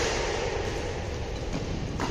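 Steady rushing noise of a sports hall with its wall fans running, during a badminton doubles rally, with a few faint racket hits on the shuttlecock.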